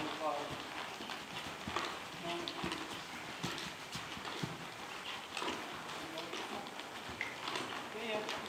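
A horse walking on arena sand, its hoofbeats falling in an uneven rhythm, with faint creaks and jingles of tack.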